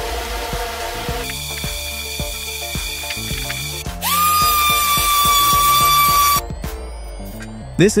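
Background music with a steady beat. About halfway through, a small handheld electric sander starts up with a rising whine, runs steadily for about two seconds over a hiss, and then stops suddenly.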